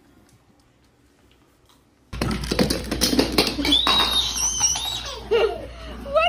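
Nearly quiet for about two seconds, then a sudden cut to a baby laughing and squealing, with a quick run of clattering and tapping.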